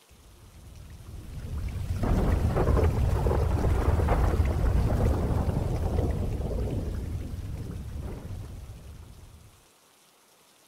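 Rolling thunder: a low rumble builds, breaks loudly about two seconds in, then slowly rolls away and fades out just before the end.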